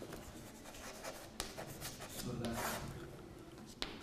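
Chalk scratching on a blackboard as a word is written and underlined, with a couple of sharp taps of the chalk.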